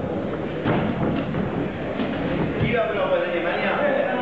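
A few sharp thuds in the first half, typical of boxing gloves landing, over voices in a large echoing hall; shouting voices take over in the second half.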